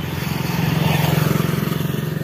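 A motorcycle's engine running as it comes up close on the road, a steady low beat that grows louder, peaks about a second in, then starts to fade.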